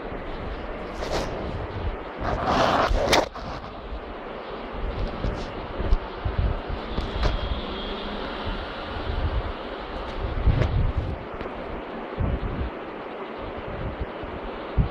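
Handling noise from a phone microphone rubbing against cradle cloth: irregular low bumps with cloth rustling, and a louder rustle about two to three seconds in as the phone pushes through the fabric.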